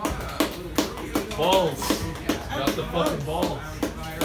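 A man talking briefly over a run of irregular knocks and taps, as instruments are handled on stage before playing.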